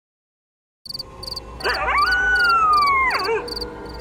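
A single long canine howl that rises, holds and slowly falls away, over evenly repeating cricket chirps at about three a second and a low hum; the night ambience starts suddenly about a second in.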